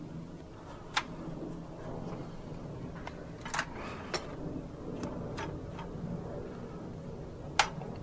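Hand screwdriver driving a stiff screw into a plastic model-car chassis: a handful of small sharp clicks and ticks at irregular intervals as the screw is turned and the parts are handled, over a faint low hum.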